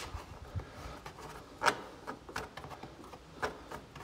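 A rubber stop being worked loose from a plastic trim panel by hand: a handful of small clicks and rubbing, with one sharper click a little under two seconds in.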